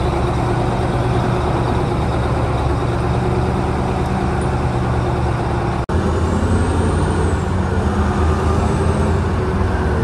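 Caterpillar 988B wheel loader's V8 diesel engine running hard under load as it lifts and carries a marble block on its forks. The sound breaks off for an instant just before six seconds in and comes back deeper and stronger, with a faint high whistle rising and falling twice near the end.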